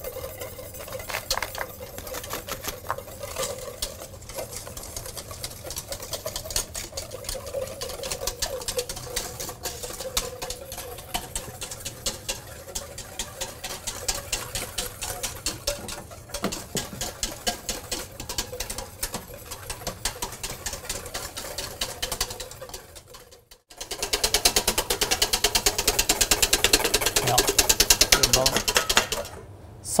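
Wire whisk beating rapidly against a stainless steel bowl, a fast continuous clatter of the wires on the metal as egg yolks, sugar and sweet wine are whisked thick over a water bath for sabayon. The clatter breaks off briefly about three quarters of the way in and comes back louder.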